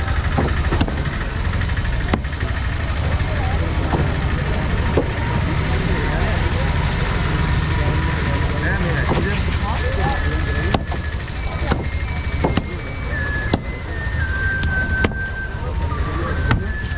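Knife chopping through fish on a wooden cutting board, a sharp knock every second or so, over a steady low engine rumble. In the last few seconds a short series of high electronic notes steps up and down in pitch.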